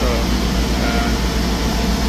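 Magic-Pak packaged air-conditioning unit running with its compressor and condenser fan on: a steady, loud low hum under a haze of airflow noise, the unit working normally.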